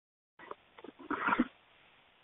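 A short animal vocal sound, a few quick clicks then a louder call lasting about half a second, heard through narrow-band conference-call audio.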